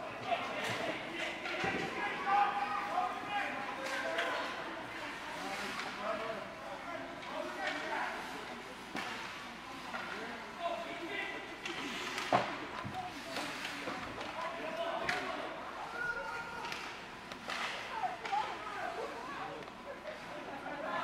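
Ice rink game sound: spectators and players talking and calling out, with sharp knocks of hockey sticks, puck and boards scattered through it, the loudest about twelve seconds in.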